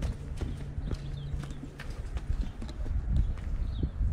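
Footsteps on a rocky dirt trail: irregular knocks of shoes on stones, over a low rumble on the microphone, with a faint steady hum in the first two seconds.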